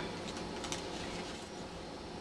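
Steady low background hiss, with faint light rustling of a thin metallic foil sheet as hands smooth it flat.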